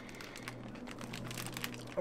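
A small chip bag crinkling faintly in irregular little crackles as a plastic fork digs into it.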